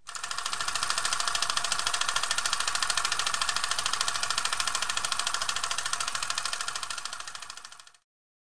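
A rapid, even mechanical clatter of fast regular ticks, fading in at the start and fading out near the end.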